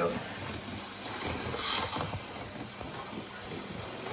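Steady hiss-like whir of a 00 gauge model Class 73 locomotive running on the layout's track, with a brief brighter hiss about a second and a half in.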